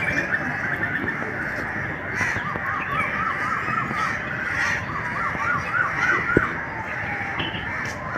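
A chorus of birds calling, with a quick run of short, repeated calls about four a second in the middle. A brief low knock sounds just after six seconds in.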